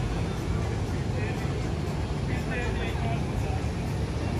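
Outdoor street ambience: a steady low rumble with faint snatches of distant, unintelligible voices.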